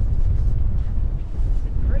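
Strong wind buffeting the microphone, a steady low rumble.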